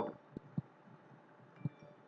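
Near silence: faint room hiss with three short, faint clicks.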